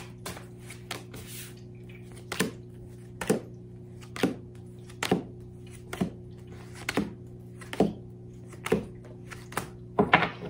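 Tarot cards being dealt one at a time onto a wooden tabletop: nine crisp slaps, about one a second, over a steady low hum.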